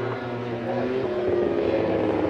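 JSB1000 superbikes' 1000 cc four-cylinder engines running at high revs on track, several engine notes heard at once, their pitch easing slightly down.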